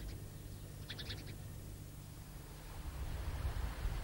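Faint outdoor ambience over a low steady hum, with a short quick run of small-bird chirps about a second in.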